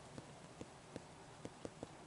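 Near-quiet room tone with about half a dozen faint, scattered clicks: handling noise from fingers on a saline squirt bottle and the camera held close by.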